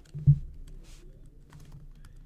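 Typing on a computer keyboard: a few scattered keystroke clicks, with one loud low thump about a quarter second in.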